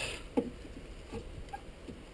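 A few faint metallic ticks and clicks of locking pliers clamped on a stiff rear brake caliper piston as it is wiggled back and forth to free it.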